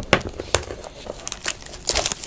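Plastic shrink-wrap being picked at, torn and crumpled off a sealed trading-card box, an irregular string of sharp crackles.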